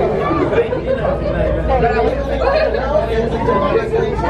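Several people talking at once, a continuous babble of overlapping voices, over a steady low hum.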